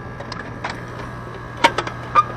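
Hand clicks and knocks at the air conditioner's wall-mounted disconnect box as the breaker is put back in, a few light clicks about half a second in and a sharper run of clicks about one and a half seconds in, over a steady low hum.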